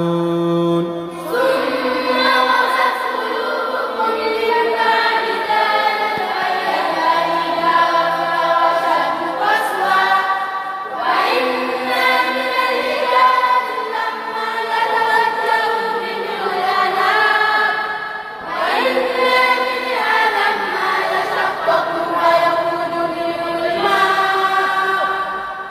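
A group of voices reciting a Qur'an verse together in a slow, melodic chant, held notes gliding between pitches, with short breaks between long phrases.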